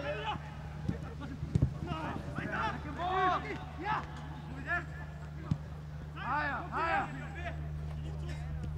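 Footballers shouting and calling to each other on the pitch during a match: several voices in short, rising-and-falling cries, with a few sharp thuds, the loudest about one and a half seconds in, over a steady low hum.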